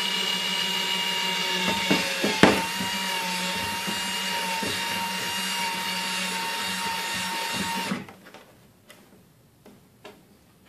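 Power drill with a 3/16-inch bit running at a steady whine as it bores through a plastic trash can lid, with a few sharp clicks a couple of seconds in as the bit bites. The motor stops about eight seconds in.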